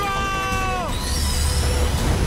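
Cartoon battle sound: a boy's long shout that drops in pitch just before a second in, then high falling whooshes over a deep rumble as a Bakugan ball opens into its lion-like creature, all over background music.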